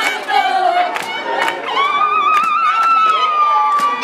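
A group of girls singing and shouting together with sharp hand claps. In the second half one high voice holds a long cry, its pitch wavering briefly before it steadies.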